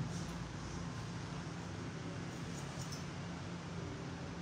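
Steady low room hum, with a few faint, crisp snips of hairdressing scissors cutting a held section of hair, most of them in a quick cluster past the middle.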